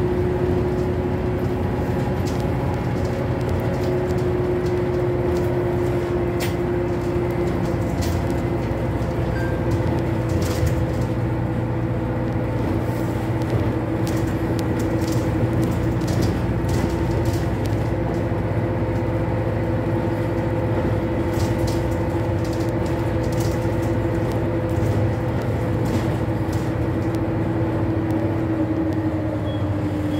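Inside a Renault Citybus 12M city bus under way: the steady drone of its diesel engine and drivetrain, with a whine held at one pitch that drops a little near the end, over road noise and occasional small rattles.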